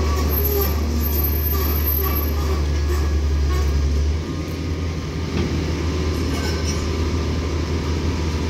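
Diesel train engine running in the rail yard, a steady low drone that drops in level suddenly about four seconds in.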